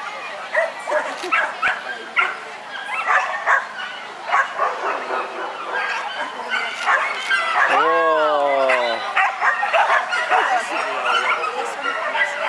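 A dog barking repeatedly in short sharp yips over background voices. About eight seconds in, a long call falls steadily in pitch for about a second.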